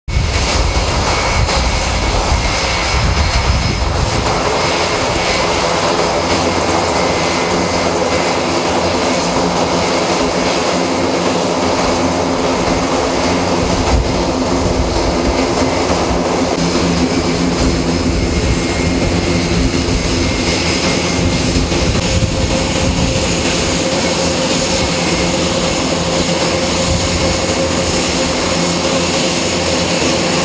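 Airbus A400M's four turboprop engines and eight-bladed propellers running on the ground: a loud, steady drone of several held tones over engine hiss.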